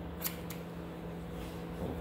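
Steel haircutting scissors snipping the ends off a lock of wet hair: two quick, crisp snips in the first half second, over a faint steady hum.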